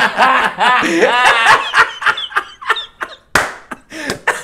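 A man laughing hard: loud, high-pitched whooping laughs for about the first second and a half, breaking into short gasping bursts. A brief sharp noise comes about three and a half seconds in.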